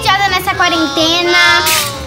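A child singing a short melody in a high voice, the pitch wavering on held notes, with light music behind.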